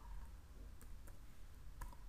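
A few faint clicks from a computer keyboard, spread out over two seconds.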